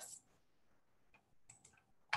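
Near silence: room tone with a few faint clicks between about one and two seconds in.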